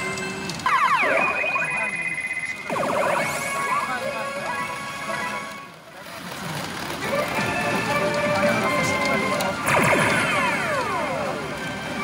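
P Ōumi Monogatari 5 pachinko machine playing its jackpot and bonus-round music and sound effects, marking a win going into the bonus zone. Falling swoop effects come about a second in, near three seconds and near ten seconds, with a short lull around the middle.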